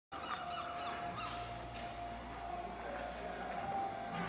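Birds calling, with a few short chirps in the first second or so, over a faint steady hum.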